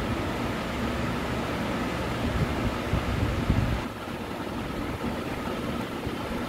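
Steady background noise, a low hum with hiss, with a few soft bumps a little over three seconds in; it eases slightly near four seconds.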